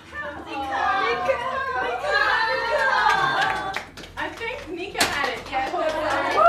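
Several women talking and exclaiming excitedly over one another, with a few sharp hand claps.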